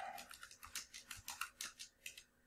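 Typing on a computer keyboard: about a dozen faint keystrokes in quick succession.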